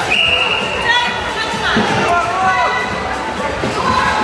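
Overlapping voices and shouts echoing in a large sports hall, with a brief high held call near the start.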